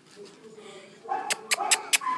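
Border collie puppies whining and yapping: a faint whine, then from about a second in a quick run of short, high yaps.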